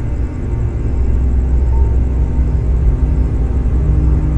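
Dark film-score underscore: a loud, low rumbling drone that swells slowly, with faint held notes above it.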